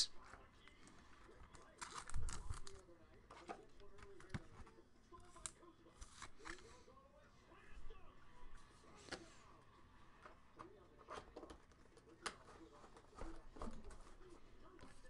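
Faint handling of trading cards and plastic card holders: scattered soft rustles and clicks, with a slightly louder knock and rustle about two seconds in.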